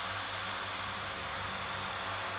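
Steady background hiss over a low, even hum, with nothing else happening: the room tone of a small room between sentences of speech.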